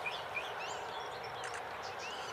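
Wild birds chirping in short calls that slide up and down in pitch, several in the first second and fewer after, over a steady outdoor hiss.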